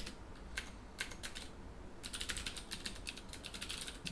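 Typing on a computer keyboard: a few separate keystrokes, then a quick run of keystrokes in the second half.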